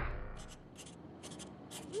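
Pencil scratching on paper in a few short, quiet strokes, while the previous music fades out at the start.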